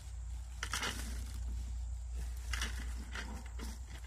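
Dry wood chips rustling and crunching as they are scooped up by hand, in a few short bursts, over a steady low rumble.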